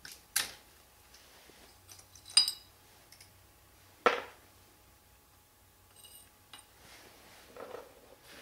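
Hand tools and small steel parts clinking as the 11 mm bolts holding the guide sleeve in a manual transmission's bell housing are undone: three sharp metallic clinks about two seconds apart, the middle one ringing briefly, then a few faint ticks near the end.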